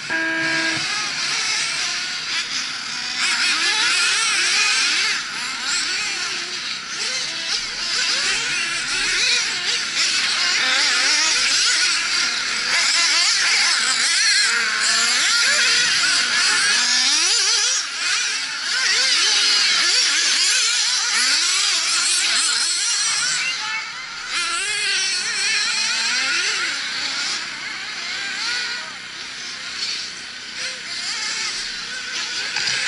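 Several nitro RC buggy engines screaming at high revs as they race, their high-pitched whines overlapping and rising and falling in pitch with throttle through the corners and jumps.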